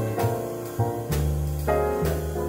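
Jazz piano trio playing a blues: piano chords over a walking upright bass, with light cymbal strokes from the drums.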